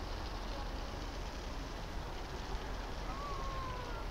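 Steady outdoor background noise with a low rumble, and a faint tone that slowly falls in pitch near the end.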